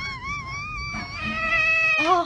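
Domestic cat meowing: a short wavering meow, then a longer drawn-out meow that rises slightly in pitch near the end.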